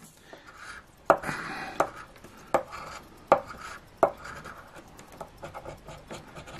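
A coin scraping the coating off a scratch-off lottery ticket on a wooden table, in short scratchy strokes, with five sharp clicks of the coin on the card about three-quarters of a second apart.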